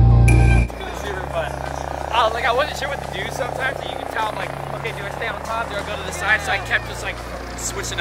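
Loud music cuts off in the first second. Then people talk and laugh over quiet background music with long held bass notes.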